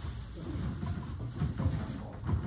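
Scattered soft thuds and low knocks with handling noise, as a roomful of people pass around and handle rubber racquetballs.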